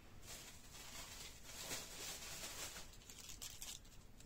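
Faint rustling and crinkling of firecracker packs being handled.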